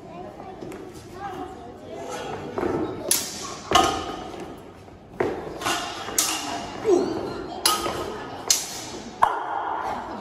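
Steel swords clashing against each other and against small round bucklers in a sword-and-buckler bout: a run of about eight sharp, ringing clanks, starting about three seconds in and echoing in a large hall.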